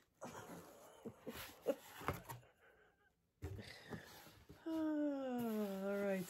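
Faint rustling and handling of a cardboard gift box and its tissue-wrapped contents, then near the end a woman's long, falling 'oooh'.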